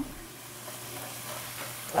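Food sizzling in a frying pan on the stove, a steady hiss.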